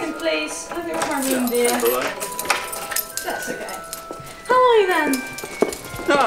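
Two people talking with strongly sliding, sing-song intonation; the loudest moment is a long falling vocal slide about four and a half seconds in. Quiet background music runs underneath.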